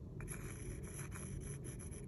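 A fine paintbrush stroking black paint onto a wooden earring blank: faint soft rubbing and brushing from about a quarter second in, over a low steady hum.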